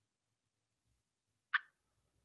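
Near silence, broken once by a single short click about a second and a half in.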